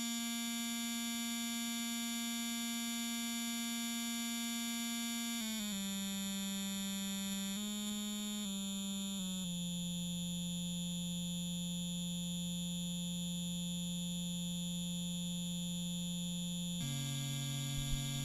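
A sustained, synth-like drone from a loop-station performance: one held note at a steady level that steps down in pitch about five seconds in, wavers up and down briefly, settles lower, then drops again near the end.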